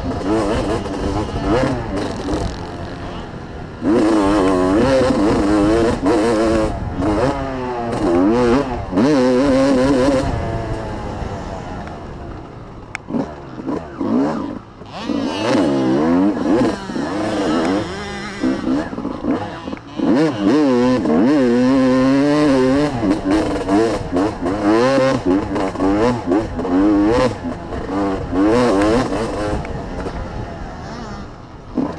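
Motocross dirt bike engine heard from the rider's helmet, revving hard and dropping back over and over as the rider accelerates, shifts and backs off. Its note sweeps up and down, with quieter spells in the middle where the throttle is rolled off.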